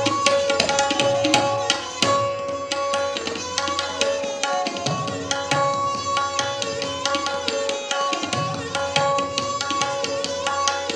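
Tabla solo: rapid, dense strokes on the tabla drums, over a bowed sarangi playing a repeating melodic refrain (lehra) that keeps the cycle.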